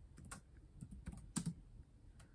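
Typing on a computer keyboard: a handful of faint, irregular key clicks, the loudest about one and a half seconds in.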